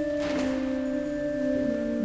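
Digital keyboard played with an organ voice: sustained chords held, with the lower notes stepping down twice.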